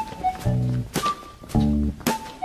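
Playful background music: low plucked notes alternating with short, sharp knocks in a bouncy rhythm of about two beats a second, with a few higher notes on top.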